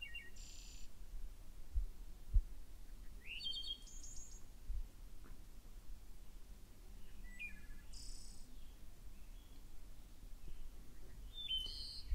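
Faint bird chirps in short bursts, about four groups a few seconds apart, over a quiet background. A few brief low thumps, the loudest a little after two seconds in.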